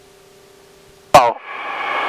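Headset audio from a light aircraft's intercom: a low steady hiss with a faint hum. About a second in, a sharp click as a microphone keys, then a voice holding a drawn-out "Oh" that cuts off abruptly.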